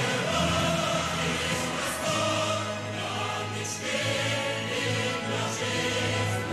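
Closing theme music of a TV show: a choir singing sustained chords over a steady bass line.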